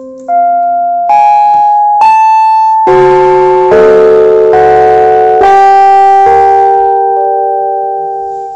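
Electronic keyboard playing a slow phrase of sustained, ringing notes, a new note or chord about every second, building into full chords in the middle and fading away near the end.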